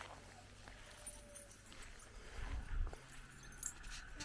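A calf grazing, with faint clicks and clinks from its chain collar as it tears at the grass. A brief low rumble comes about two and a half seconds in.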